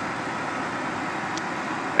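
Steady whooshing hum of an Atwood Hydroflame RV furnace's blower running ahead of ignition, with a faint tick about a second and a half in.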